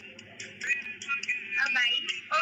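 A voice over background music, thin-sounding, louder in the second half.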